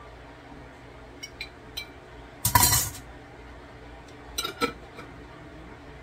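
Glass jar of olives clinking against a glass mixing bowl a few times, with one louder half-second clatter about two and a half seconds in.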